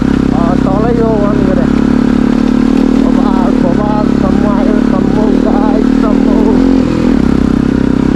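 Motorcycle engine running steadily while riding a rough dirt track, its note dipping briefly about seven seconds in. A voice with wavering, rising and falling pitch sounds over the engine.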